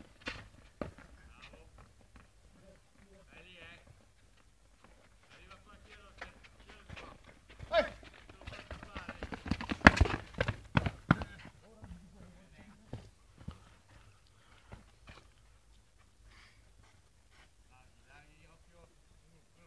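Football play on artificial turf: running footsteps and ball kicks, with a quick run of sharp knocks as two players challenge for the ball about halfway through, and voices calling in the background.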